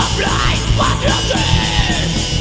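Hardcore punk band playing fast and heavy, with distorted guitars, bass and drums, and a shouted vocal over them that breaks off about a second and a half in.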